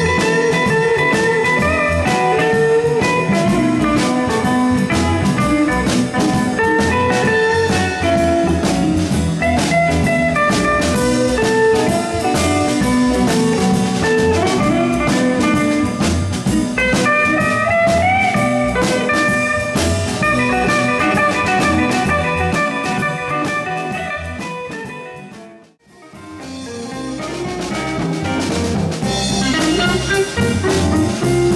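Blues band playing an instrumental passage, with guitar over a drum kit. About 25 seconds in, the music fades away to near silence and then fades back up.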